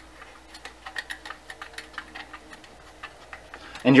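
Small clicks and ticks, several a second and uneven, as fingers turn the thumb screws that clamp a Kodak Brownie flash holder onto the metal camera body.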